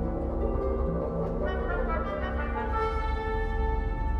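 Symphony orchestra playing slow contemporary classical music: overlapping held notes over a steady low rumble, with a higher held note coming in near three seconds in.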